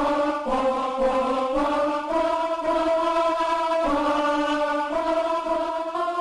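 Papelmedia Ahh-Choir soundfont playing a simple tune in sustained sampled 'ahh' choir voices, the held notes stepping in pitch about once a second. It was recorded with the volume hitting red, so it sounds harsh and not that great.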